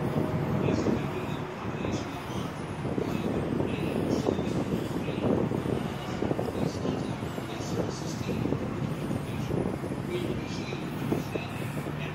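Steady rumbling wind noise on a handheld phone's microphone while walking outdoors, with scattered short knocks from handling and footsteps.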